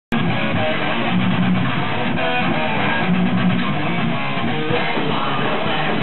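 Thrash metal band playing live: loud distorted electric guitar, bass and drums at a steady driving pace, cutting in abruptly mid-song at the very start.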